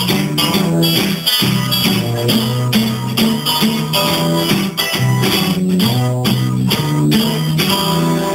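Acoustic guitars playing a blues with a steady plucked and strummed rhythm and moving bass notes, recorded on a mobile phone's built-in microphone.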